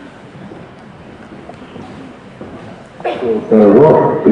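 Low hall room noise, then about three seconds in the soundtrack of a short documentary film starts loudly over the hall's speakers, with a voice.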